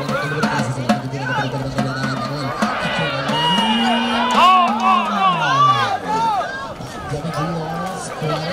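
Spectators at a soccer match shouting and calling out during play, with a long held call that rises in pitch about three seconds in and falls away near six seconds.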